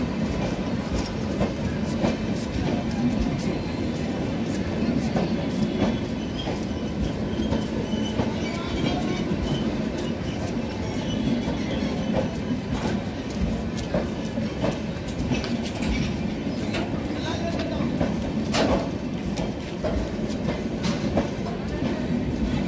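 Coaches of an arriving Indian express passenger train rolling past a platform: a steady rumble of wheels on rail with many small clicks, and one louder clank near the end.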